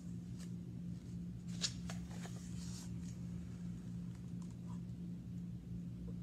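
Pages of a hardcover picture book being turned: a few soft paper rustles and flicks, the sharpest about a second and a half in, over a steady low hum.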